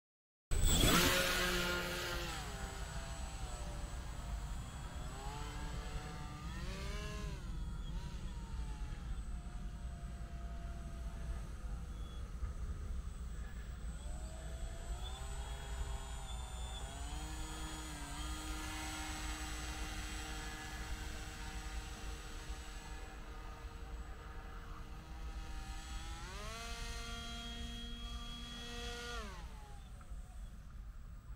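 Model paramotor's motor and propeller running, its pitch rising and falling again and again with the throttle, over a steady low wind rumble on the microphone. The sound starts suddenly about half a second in.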